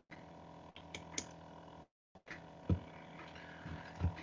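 Faint steady hum from an open microphone on a video call, with a few soft clicks and a brief cut to complete silence about two seconds in.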